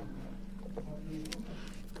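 Room tone with a steady low hum and a few faint clicks.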